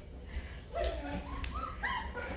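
Great Bernese puppies about three weeks old whimpering and squeaking in short high cries, hungry and wanting to nurse.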